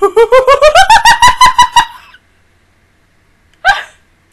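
A woman laughing: a quick run of high-pitched 'ha' pulses, about eight a second, climbing in pitch for nearly two seconds, then one short burst of laughter near the end.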